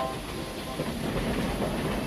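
Steam train moving along a station platform: a steady rail noise with no distinct tones.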